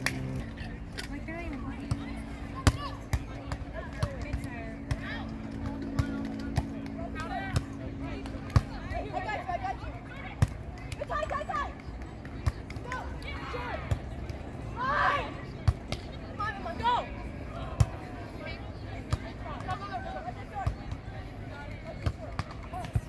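Distant voices and calls from players and spectators, with scattered sharp slaps of hands hitting a volleyball during a rally, over a steady low rumble of open-air noise.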